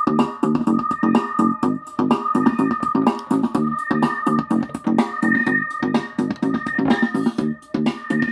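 Electronic dance track playing through the iShower, a small battery-powered Bluetooth shower speaker streaming from a phone, as a sound sample. The track has a fast, steady beat under a held high note.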